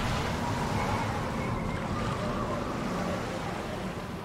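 Ocean surf and wind sound effect, an even rushing noise that slowly fades.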